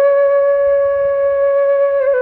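Background music: a flute-like wind instrument holding one long, steady note.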